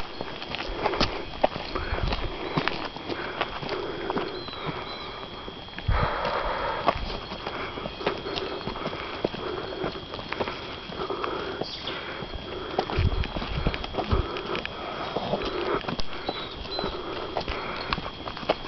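Footsteps on a dirt and gravel road at a walking pace, with the phone's handling noise. A couple of faint bird chirps come through, about four seconds in and again near the end.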